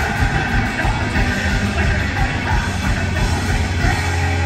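A live thrash metal band playing loud, with distorted electric guitar and drum kit in full flow mid-song.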